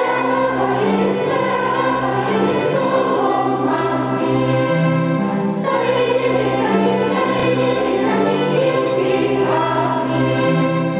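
A mixed youth choir singing long, held notes with violin accompaniment, the pitch moving in steps from note to note.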